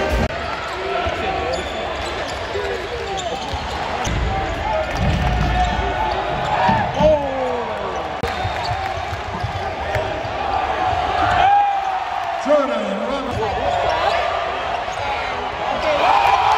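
Basketball arena crowd during a college game: many voices talking and calling out over a constant hubbub, with a basketball bouncing on the hardwood court.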